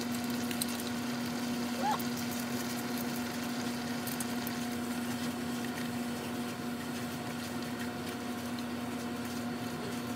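Taro leaves in coconut milk sizzling and bubbling steadily in a pan as they are stirred, over a steady low hum.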